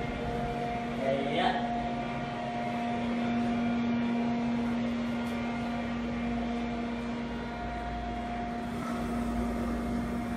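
Kone elevator cab's ventilation fan running with a steady, loud hum and a fixed pitch.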